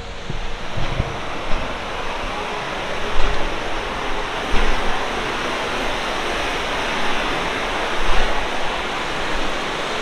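Fast mountain river rushing over boulders through rapids: a steady rush of white water, with a few short low bumps on the microphone.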